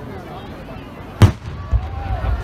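An aerial firework goes off with one sharp, loud bang about a second in, followed by a lower thud and a rumble.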